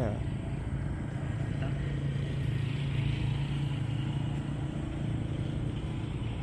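A motor vehicle's engine running steadily, a low even hum that neither rises nor falls.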